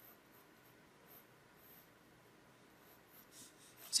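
Mechanical pencil sketching on paper: faint, short scratching strokes at intervals.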